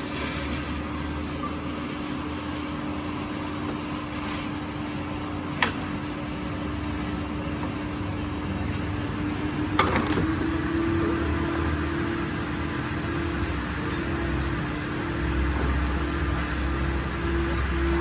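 A steady mechanical hum holding one low tone, which steps slightly higher about ten seconds in, over a low rumble. Two sharp clicks come about five and a half and ten seconds in.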